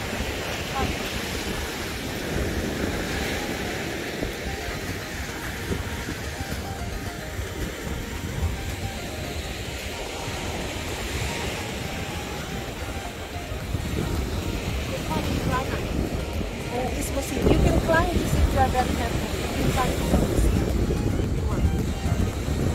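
Small surf waves washing onto a sandy beach, with wind rumbling on the microphone that grows louder and gustier in the last few seconds.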